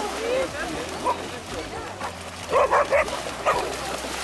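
Vizsla barking: a quick run of three barks a little past halfway, then one more half a second later.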